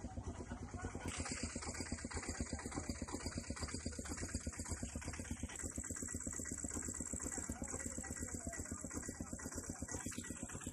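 An engine running at idle, with a fast, even pulse throughout.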